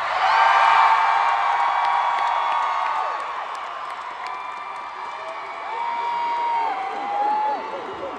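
Concert audience screaming and cheering just after a song has ended, with many long, high-pitched screams overlapping. It is loudest near the start and swells again about six seconds in.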